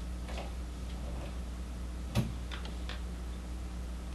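Steady low room hum with a few scattered small clicks and taps, the loudest a single knock about two seconds in: small handling noises at a meeting table.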